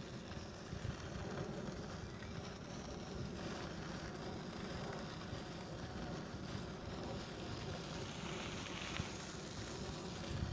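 Electric unicycle rolling along a dirt path: a steady low rumble of the tyre on the loose surface, with light wind on the microphone.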